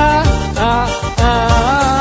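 A man singing long drawn-out "A" vowels into a microphone over a backing track with a steady beat. His voice slides up into each held note, with two short breaks between them.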